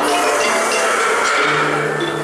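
A youth string orchestra with guitar playing an ensemble piece, with sustained bowed notes; a low held note comes in about one and a half seconds in.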